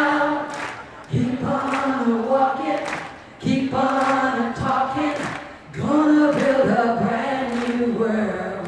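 Unaccompanied singing of a gospel freedom song, a woman's voice leading with many voices joining in, in phrases of about two seconds separated by short breaths.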